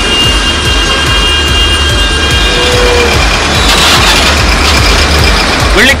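Steady din of slow-moving road traffic, cars and trucks queued at a toll plaza, with a background music track running under it.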